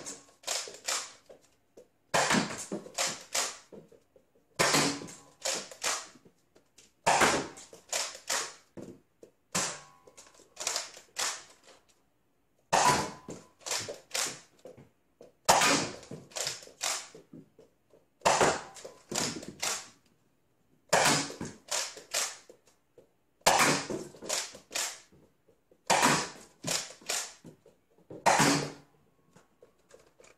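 Nerf Hyper Impulse-40 blaster being primed and fired over and over: a short cluster of sharp plastic clicks and snaps about every two and a half seconds, with quiet gaps between.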